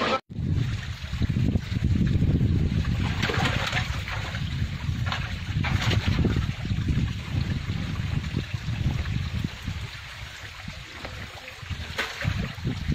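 Water running and trickling in a rocky mountain stream, with a fluctuating rumble of wind on the microphone and a few brief clicks.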